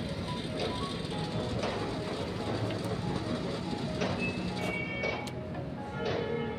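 Petrol pump nozzle filling a motorcycle's fuel tank: a steady rushing noise, with faint music-like tones and a few light clicks over it.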